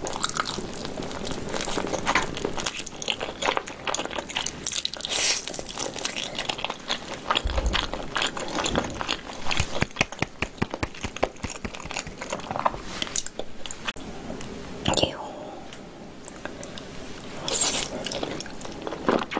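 Biting and chewing pig's tail, gnawing the meat off the bone: a dense run of wet, crackly mouth sounds.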